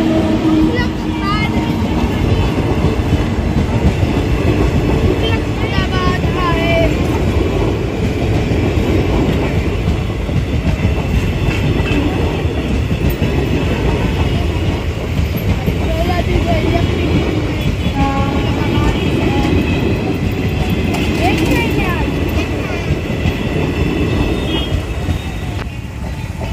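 Passenger train hauled by a WAG-9 electric locomotive passing at close range: a loud, steady rumble of steel wheels on rail with the clickety-clack of coaches over rail joints, easing as the last coach goes by at the end.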